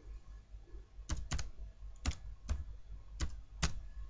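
Computer keyboard typing: six separate keystrokes at an unhurried, uneven pace, spelling out a single short word.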